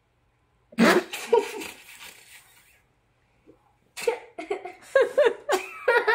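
A young girl's voice: a sudden loud exclamation about a second in that trails off, then bursts of giggling from about four seconds in, as she reacts to salt spilling over her.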